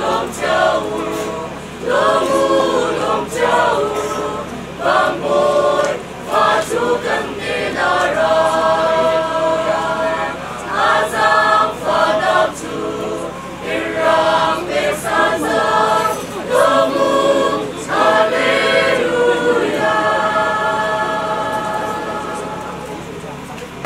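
Mixed choir of young men and women singing together in phrases, closing on a long held chord near the end.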